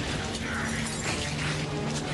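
Film soundtrack of a fire: dense crackling and clattering of flames over music with low held tones.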